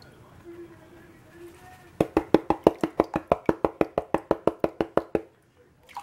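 Green plastic gold pan being knocked rapidly and evenly during panning, about nine sharp knocks a second for some three seconds, then stopping suddenly.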